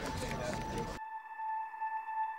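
A steady, high electronic tone held over the background noise of a call-handling control room; about a second in, the room noise cuts off suddenly and only the tone is left.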